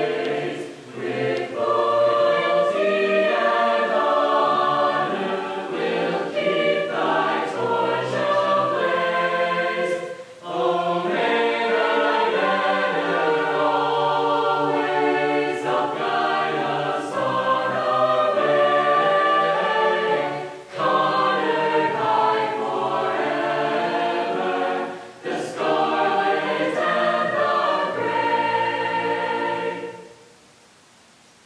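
Prerecorded high-school senior choir singing the school alma mater in held chords, breaking briefly between phrases a few times.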